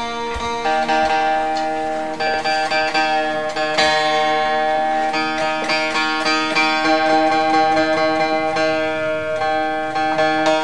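12-string acoustic guitar played fingerstyle in an Indian classical fusion style: picked melody notes over strings left ringing as a steady drone.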